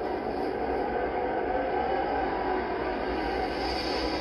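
A steady rushing noise with a low rumble underneath, growing hissier near the end.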